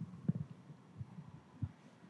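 Faint low thumps and rustling of movement as a man gets up out of an office chair and leans over it, three soft knocks spread across the two seconds.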